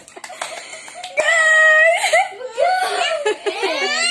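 A girl laughing and a young child whining, with one long high held cry about a second in.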